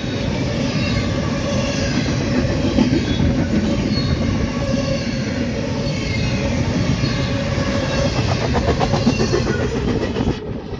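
Empty freight well cars rolling past at speed: a steady rumble of steel wheels on rail with a faint, wavering high wheel squeal. About eight seconds in comes a quick run of clicks as the wheels pass over a rail joint.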